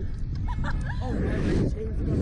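Two riders on a slingshot ride laughing and squealing in short cries, about half a second in and again near the end. A steady wind rumble runs underneath on the ride-mounted microphone.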